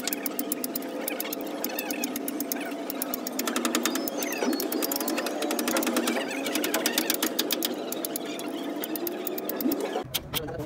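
A machine running with a rapid, even clatter of sharp clicks, many to the second, steady throughout.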